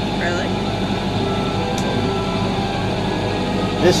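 Sailboat's inboard diesel engine running steadily while motoring: an even, unbroken low drone.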